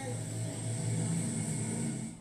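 Soundtrack of a projected film clip playing through a room's wall loudspeakers: a loud, steady, noisy rumble with a hum, cutting off suddenly at the very end as the clip ends.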